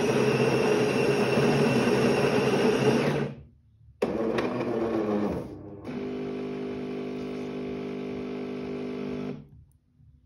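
Jura X9 automatic coffee machine making an Americano. Its grinder runs loudly and stops abruptly about three seconds in; after a short pause another mechanical noise runs for a second or so. Then the pump hums steadily for about three and a half seconds as coffee runs into the glass.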